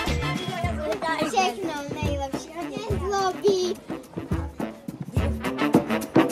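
High-pitched children's voices talking over background music with a beat; the voices fall away a little before four seconds in, leaving the music.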